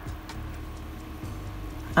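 A quiet stretch: a low steady hum with faint background music.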